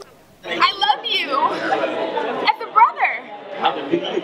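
Restaurant chatter: several people talking at once in a dining room, starting about half a second in.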